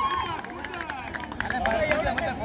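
Players shouting on a netball court, one long held call ending just after the start, then the quick scattered footfalls of players running on dirt with short calls between them.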